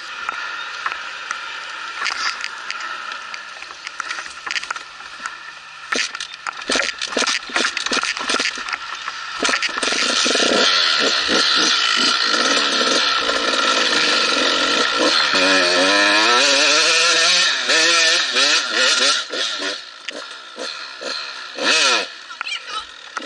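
KTM off-road motorcycle engine running at a low idle, with a run of short knocks and scrapes about six to ten seconds in. From about ten seconds in it is revved hard and held for several seconds, its pitch dipping and climbing again around the middle, then drops back near the end.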